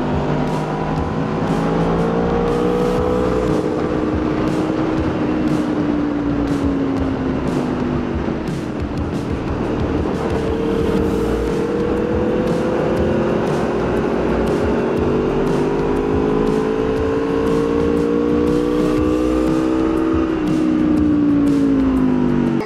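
Sport motorcycle engine heard from onboard at track speed, its pitch rising and falling slowly with the throttle, over a steady rush of wind on the microphone.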